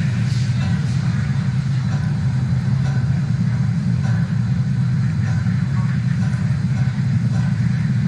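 Steady low rumble of the Falcon 9 first stage's nine Merlin engines during ascent, throttled down ahead of max dynamic pressure.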